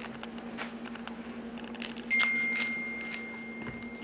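Foil trading-card pack handled and torn open by hand: faint crinkling, then a louder crackling rip about two seconds in that dies away over the next second. A steady low hum runs underneath, and a thin high tone joins about two seconds in.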